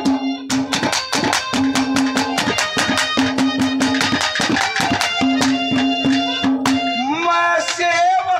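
Live Haryanvi ragni folk music: a fast, steady hand-drum beat under a held melody note that repeats in short phrases. Near the end a male voice glides up and begins singing.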